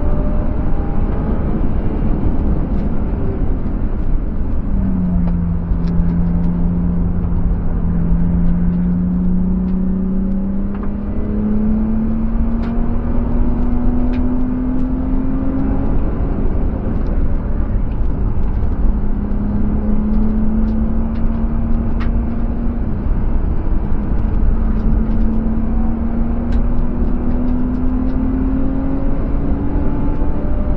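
BMW E36 coupe's M50B25TU 2.5-litre inline-six, heard from inside the cabin at track speed over road and wind noise. Its note drops sharply about five seconds in, climbs steadily, eases briefly past the middle and climbs again near the end.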